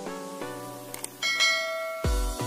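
A notification-bell chime from a subscribe-button animation rings out a little over a second in, just after a light click, over background music of evenly paced notes.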